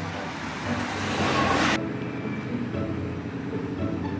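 A road vehicle passing, its noise building over a second or so and then cut off suddenly, with soft background music underneath throughout.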